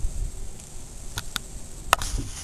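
Wind buffeting an outdoor microphone in uneven low rumbles, with a couple of faint clicks and one sharp click near the end, where the recording cuts.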